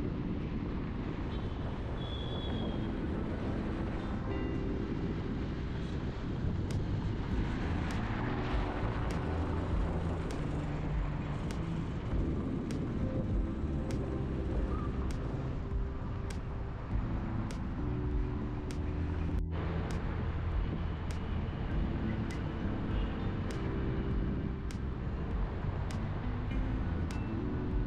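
Steady road and engine noise from a car driving on a highway, heard from inside the car, under soft background music: low sustained notes that change every second or two, with a faint tick about once a second.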